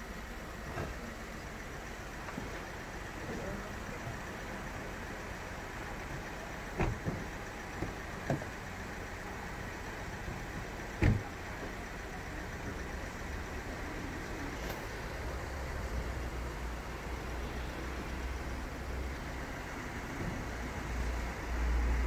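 Steady roadside traffic and engine noise, broken by three short knocks about seven, eight and eleven seconds in. A low rumble builds over the last several seconds.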